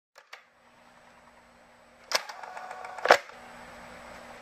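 Mechanical clicks of a VHS video cassette player starting playback, over a faint hiss and a low steady hum: two faint clicks at the start, a clatter of clicks about two seconds in and a single loud click about a second later.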